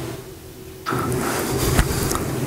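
Rustling handling noise close to a microphone, starting suddenly about a second in, with a single thump just before the end, as things are moved on the altar.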